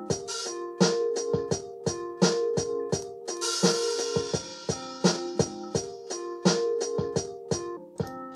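Lo-fi drum-machine beat from BandLab's LoFi kit, with kick, snare and hi-hats in a repeating pattern, playing over a looped chord progression on electric piano.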